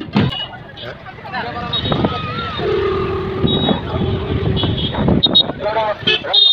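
Voices of a roadside crowd mixed with passing traffic, with a horn held on one steady note for about two seconds in the middle and short high beeps.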